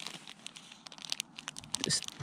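Thin plastic bag crinkling as it is handled and pulled open by hand: a quick run of small crackles.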